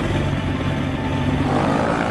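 PAL-V One gyrocopter's engine and rear pusher propeller running steadily as it rolls down the runway for takeoff.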